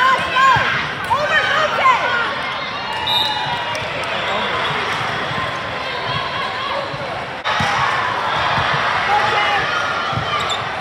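Indoor volleyball play echoing in a large sports hall: balls being struck and hitting the court floor, sneakers squeaking in the first couple of seconds, over a continuous chatter of players' and spectators' voices.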